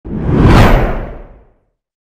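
A whoosh sound effect over a deep rumble for a channel logo intro. It swells to a peak about half a second in and fades out by a second and a half.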